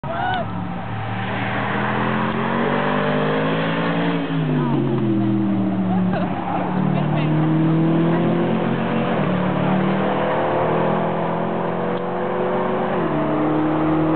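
Mercedes-AMG V8 of the F1 course car accelerating up through the gears as it approaches. Its pitch climbs steadily and drops at two upshifts, one about four seconds in and one near the end.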